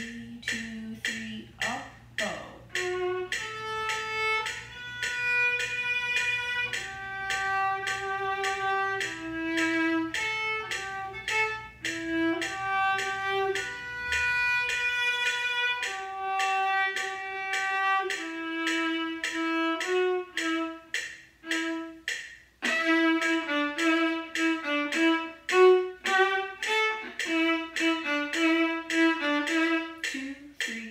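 Solo viola played with the bow: a melody of held notes, each about a second long, then, about three-quarters of the way through, a run of short, detached staccato notes.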